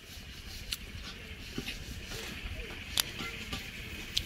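Quiet outdoor background: a steady high hiss with low rumble, broken by a few sharp clicks, the loudest about three seconds in.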